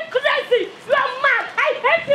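A woman shouting in a very high-pitched voice, short syllables following one another quickly with hardly a break.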